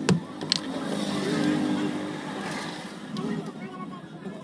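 Voices in the background, with a passing motor vehicle that swells about a second in and fades before the end; two sharp knocks right at the start.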